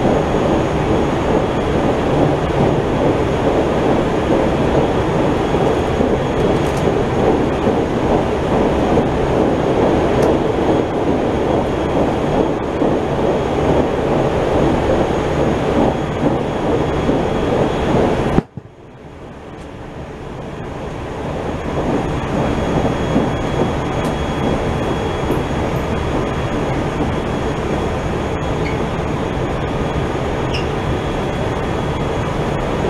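Running noise of a JR Central Tokaido Line Home Liner train heard from inside the carriage: a steady, loud rumble of the train at speed. Just past halfway the sound drops off abruptly and swells back to full level over a few seconds.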